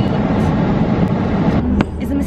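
Steady road and engine noise inside a moving car's cabin. It drops off suddenly near the end, with a sharp click.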